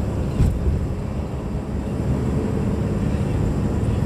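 Steady low rumble of road and engine noise inside a moving car's cabin, with one brief knock about half a second in.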